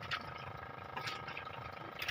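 Faint steady hum with two light clicks about a second apart.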